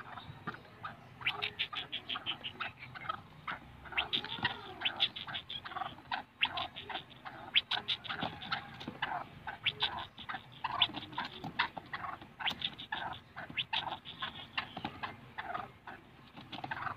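Caged black francolin calling: rapid runs of short, clicking notes, several in quick succession, then a brief pause before the next run.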